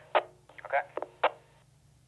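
Brief clipped voice over a courier dispatch two-way radio: a short "okay" and a few quick syllables in the first second, then a short quiet gap.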